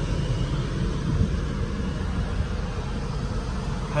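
Steady low rumble with a light hiss inside a parked car's cabin, with no distinct events.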